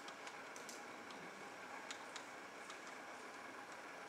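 Faint, irregular clicks of a laptop's keys and trackpad being pressed, over the low hiss of the room.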